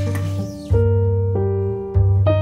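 Piano playing a slow introduction: held chords changing about every second over a deep bass note struck again about every second and a quarter.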